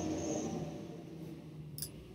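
Quiet room tone with a faint steady low hum, and one brief click near the end.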